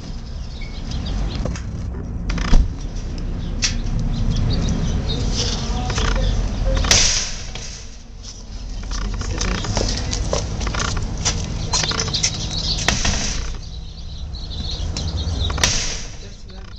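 Collared dove pecking seed from a plastic cage feeder: quick, irregular clicks and rattles of beak on seed and plastic, over a steady low rumble.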